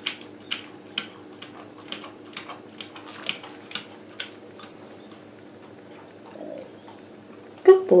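A small dog licking peanut butter off a rubber lick mat: a quick run of wet licking clicks, a few a second, for about four seconds before they die away. A faint steady hum runs underneath.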